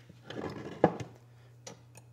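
Light handling sounds of a piston ring and a hand-crank piston ring filer on a bench: a short scrape with a sharp click just before the middle, then a couple of faint ticks.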